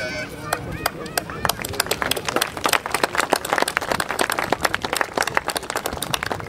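A small outdoor crowd clapping, building from a few claps to steady applause within the first two seconds.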